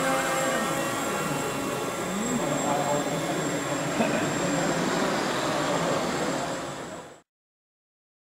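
Small electric motors and propellers of indoor RC model planes running as they fly around a sports hall, mixed with people talking in the hall. The sound fades out about seven seconds in.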